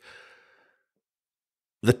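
A man's short breath out at a pause in his talk, fading away within about half a second, then dead silence until he speaks again near the end.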